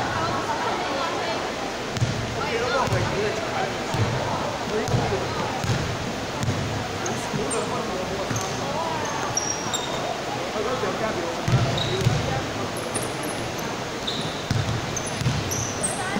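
A basketball bouncing on an indoor court floor in irregular dribbles, with the loudest thuds about two seconds in and around twelve seconds in. Short high sneaker squeaks join in during the second half, over players' voices in a large echoing sports hall.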